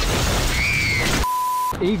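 A loud, dense crash-like noise cuts off abruptly a little over a second in. It is followed by a single steady beep tone lasting about half a second, like a censor bleep.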